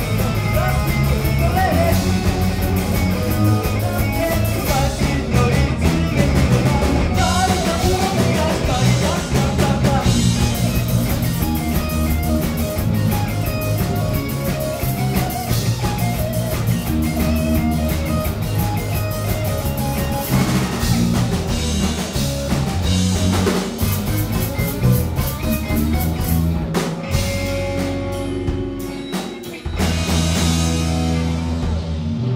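Live rock band playing: electric guitars, bass and drum kit with a lead singer, amplified through the PA in a small club. Near the end the band drops back for a couple of seconds, then comes back in full.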